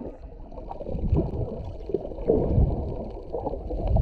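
Muffled underwater sound of seawater picked up by a camera held under the surface: low, irregular gurgling swells with almost no treble.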